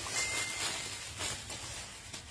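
Clothing and plastic wrapping rustling and crinkling as garments are handled, with a few short crackles.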